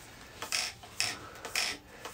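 Handling noise from a plastic pistol-grip RC radio transmitter turned over in the hands: three short rubbing rustles about half a second apart.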